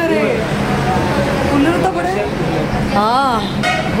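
People talking in a room, with one smooth tone that rises and then falls, lasting about half a second, around three seconds in.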